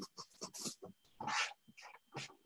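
Faint, scattered short noises over a video call: small rustles and clicks, with a longer breathy rush about a second and a half in.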